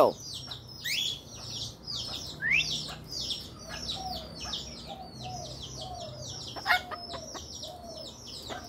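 Continuous rapid high chirping of many birds, with a couple of rising whistles in the first few seconds and a run of short, lower clucking notes from chickens through the middle, ending in a louder, sharper call near the end.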